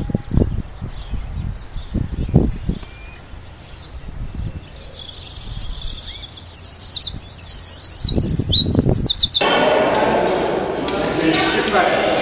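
Small birds chirping in short, high calls over wind buffeting the microphone in gusts. About nine seconds in, it cuts suddenly to people talking in an echoing hall.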